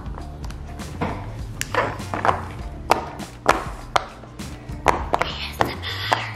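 Bubbles of a donut-shaped silicone pop-it fidget toy being pressed by fingers, an irregular series of a dozen or more short pops, over background music.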